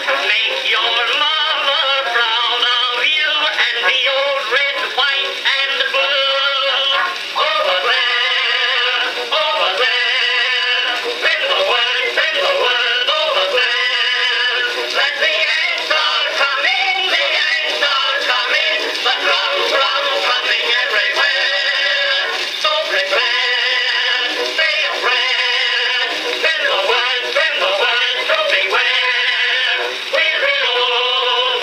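Edison Amberola DX cylinder phonograph playing a 1917 Edison Blue Amberol acoustic recording: a male singer and chorus with instrumental accompaniment, heard through the machine's horn in the room. The sound is thin and narrow, with little bass.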